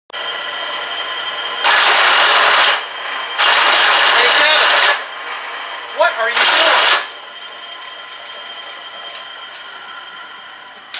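Bench drill press motor running with a steady hum, broken three times by loud, harsh grinding and chatter as a drill bit is fed into metal to cut a countersink, with a short squeal near the last burst. The bit dances around in the hole rather than cutting cleanly: it is the wrong tool for a countersink.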